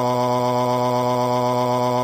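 Synthesized text-to-speech male voice holding one long, flat-pitched "waaaa" wail: a computer voice's version of a crying tantrum.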